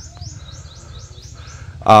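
A small bird chirping in a rapid series of short, high, rising chirps, about five a second, with a man's voice coming in near the end.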